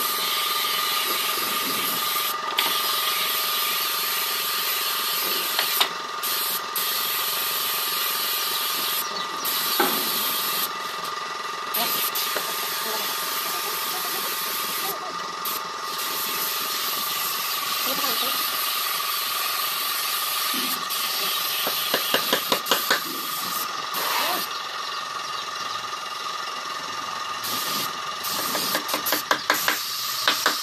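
Compressed-air gravity-feed paint spray gun hissing steadily as paint is sprayed in passes onto a steel almirah, the hiss cutting out briefly several times as the trigger is let go. A steady tone runs underneath, and runs of rapid clicks come about two-thirds in and near the end.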